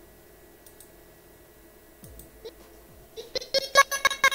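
Low background hum for about three seconds. Then, near the end, an animated outro jingle starts as a quick run of sharp clicks and short pitched blips.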